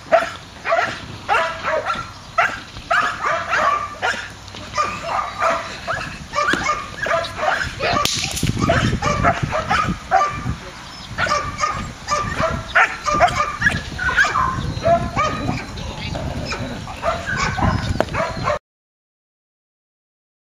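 Young Belgian Malinois barking in quick, repeated bursts, about two or three barks a second, while held on a leash facing the helper in bitework training. The barking stops abruptly near the end.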